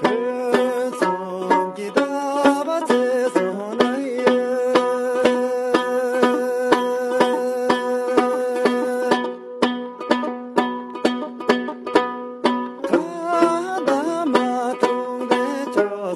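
Tibetan dranyen lute plucked in a steady, quick rhythm, with a man's voice singing a long, wavering melody over it. The voice drops out for a few seconds after the middle, leaving the lute alone, and comes back near the end.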